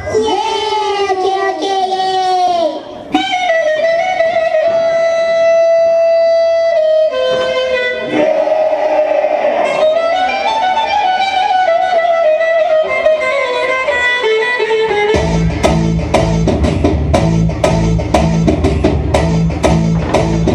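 Recorded dance music with a slow melodic opening of held, gliding notes. About fifteen seconds in, a heavy, steady beat with deep bass drops in.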